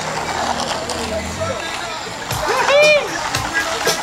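A short, high whoop from a rider a little before the end, over the steady rushing noise of a group of electric boards rolling along at speed, with a low steady hum in the first second or so.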